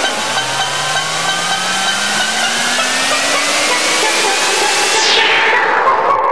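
Electronic dance music build-up: a loud hissing noise riser with two tones climbing steadily in pitch. Near the end the noise sweeps down in pitch and drops away as the next section of the mix comes in.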